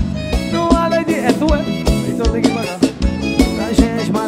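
Live forró band playing, with drum kit and bass guitar under a melody line and a steady kick-drum beat about two to three hits a second.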